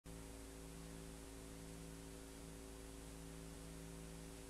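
Faint, steady electrical hum over hiss, with nothing else happening: the background noise of an old analogue video recording's soundtrack.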